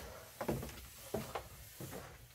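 Footsteps on carpeted basement stairs: four or five soft, unevenly spaced thuds over a faint low hum.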